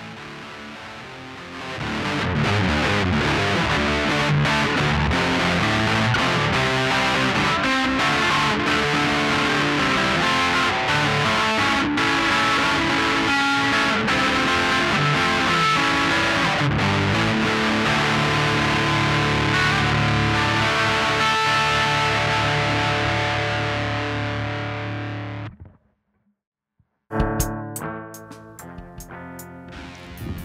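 Gibson Les Paul Classic electric guitar played through an Orange Terror Stamp amp with its internal tube gain modded and the gain set high, recorded direct from the line-out: a distorted high-gain tone with dense, sustained riffing. The playing cuts off abruptly about 25 seconds in, and after a second of silence comes a sparser run of sharply picked notes.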